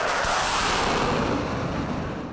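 A transition sound effect: a sudden rush of noise, like a boom or whoosh, that hits at once and dies away slowly over about two seconds.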